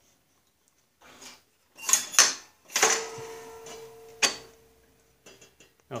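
Metallic clicks and clanks of a Snapper rear-engine rider's transmission shift parts being moved by hand into reverse. The clank about three seconds in rings on briefly, and a few light ticks come near the end.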